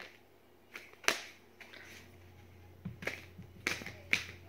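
Tarot cards shuffled by hand: a few sharp slaps and clicks of cards striking the deck, the loudest about a second in and a quick cluster near the end.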